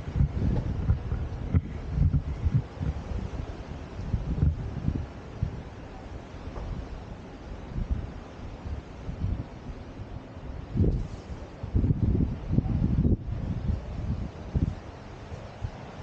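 Wind buffeting the microphone in irregular gusts, a low rumble that is strongest at the start and swells again about eleven seconds in.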